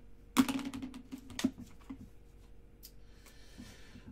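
Hard plastic graded-card slabs clicking and knocking together as they are picked up and handled: a quick clatter of clicks about half a second in, loudest at its start, and a single click near the end.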